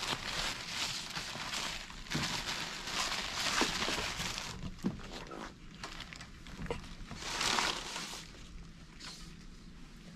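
Disposable paper and plastic drapes and underpads rustling and crumpling as they are pulled off the bed and balled up by hand, in irregular bursts that are densest in the first few seconds and again briefly around seven to eight seconds.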